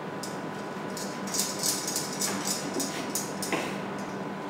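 Kitchen knife slicing an orange and a lemon into wedges on a wooden cutting board: a quick, irregular series of short cuts and taps.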